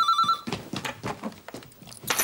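Electronic telephone ringing with a warbling trill in the British double-ring pattern, its last short burst in the first half second. Light knocks and rustles follow as the handset is reached and picked up.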